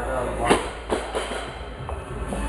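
A sharp smack about half a second in, followed by a softer knock just under a second in, with voices in the background.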